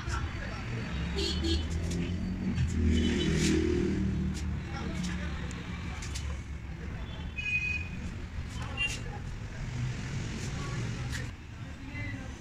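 Indistinct voices over a steady low rumble of vehicle noise, with scattered short clicks and a brief high beep about seven and a half seconds in.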